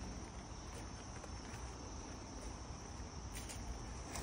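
Steady, high-pitched chorus of insects in summer woods, with a couple of faint crunches of footsteps on gravel near the end.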